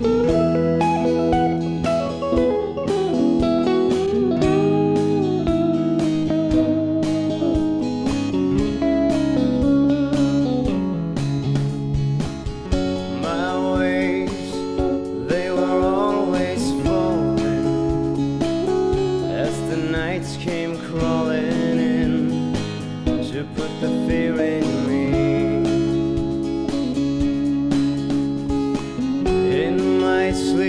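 Instrumental break in a rock song: a lead electric guitar plays a solo with bent, vibrato-laden notes over drums and rhythm guitars.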